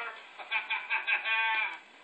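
A man laughing in short, quick bursts that end in a longer, wavering laugh, played through a TV's speaker.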